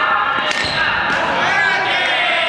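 A badminton racket hitting a shuttlecock with one sharp smack about half a second in, echoing in a large gym hall, over voices in the background.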